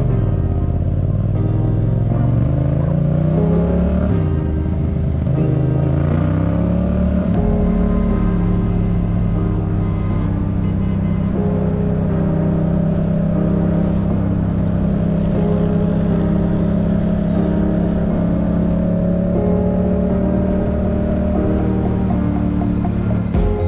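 Yamaha MT-07 parallel-twin engine pulling away and accelerating. Its pitch rises, drops once at a gear change about four seconds in, and rises again, then holds steady at a cruise from about eight seconds in. Background music plays over it.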